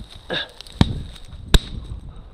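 Two sharp knocks about three-quarters of a second apart, the second one louder, over a low rumble of wind on the microphone.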